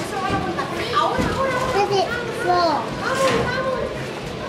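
Background chatter of many children's voices, talking and calling out over one another, with no single voice standing out.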